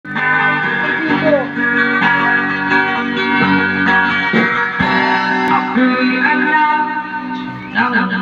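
Electric guitar played through a small portable amplifier speaker, with held chords and notes ringing and changing about every second or so.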